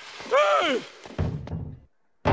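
A man shouts "Hey!", then a short run of dull thuds a little past a second in as he is thrown out and the double doors bang shut.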